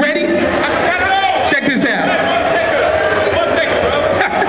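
A man's voice performing a cappella into a microphone through the club sound system, with no backing music, over crowd chatter in a large hall.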